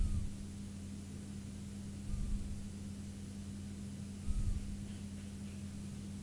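Quiet room tone: a steady low hum over faint hiss, with three soft low bumps about two seconds apart.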